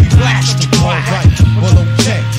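Hip hop music: a drum beat with kick drums under held bass notes, with a voice rapping over it.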